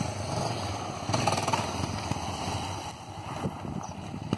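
Motorcycle engine running under throttle as the bike is held in a wheelie, getting louder about a second in.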